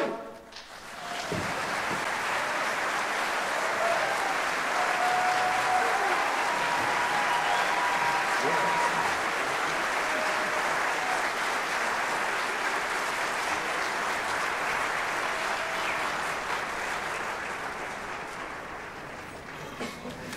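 Audience applause with cheering and a few whistles, starting just after an a cappella barbershop chorus cuts off its final chord. It builds within the first two seconds, holds steady, and fades near the end.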